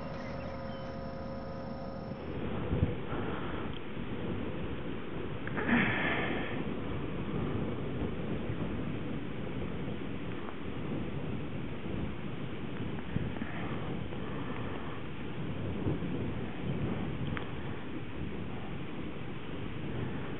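Wind buffeting a camcorder microphone: a steady low rumble that swells in gusts around three and six seconds in. It follows a steady hum that cuts off about two seconds in.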